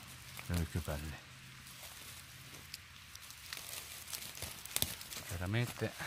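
Fingers brushing aside dry beech leaf litter on the forest floor: faint rustling with a few small crackles and snaps.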